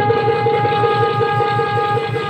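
Bhaona stage music: one long, steady wind-instrument note held without a break over a fast, even drum beat.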